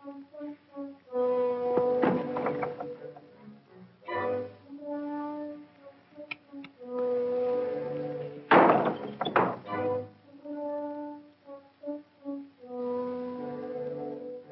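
Dramatic orchestral score with brass, horns holding and stepping through notes. Sharp percussive hits come about two seconds in, and a louder cluster of hits comes about eight and a half seconds in.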